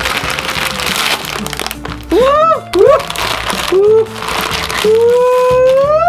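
A plastic snack wrapper crinkling as it is torn open, under background music. In the second half, drawn-out gliding vocal sounds end in a long rising note.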